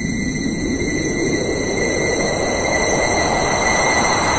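Suspense riser sound effect: a noise swell that climbs steadily in pitch under a held high tone, building to the reveal.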